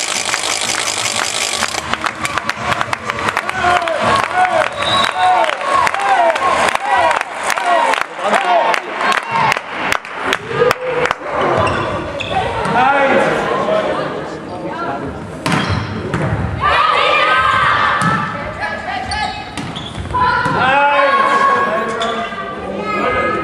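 Volleyball being hit and bouncing on a sports-hall floor: a run of sharp knocks and slaps, thickest in the first half, ringing in the hall. Players' voices shout and call over it.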